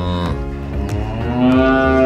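Cow mooing: a short moo trailing off at the start, then a longer, louder moo that rises and falls in pitch near the end, over background music.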